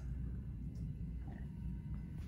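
Quiet room tone with a steady low hum; no distinct sound of the knife cutting through the soft dough stands out.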